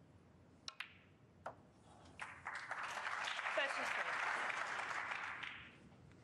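Snooker shot: sharp clicks of cue tip on cue ball and cue ball on a red close together, a further knock about a second later, then audience applause for about three and a half seconds.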